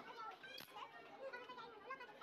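Indistinct chatter of several voices, children's voices among them, with a light click about half a second in.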